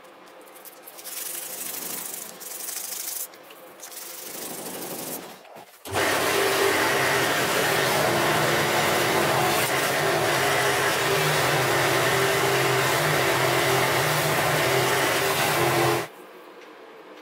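A cloth rubbing over a steel knife blade in two short spells. Then, about six seconds in, a drill press spinning a cloth buffing wheel comes in abruptly with a loud, steady motor hum and hiss as the blade is buffed against it. It cuts off suddenly near the end.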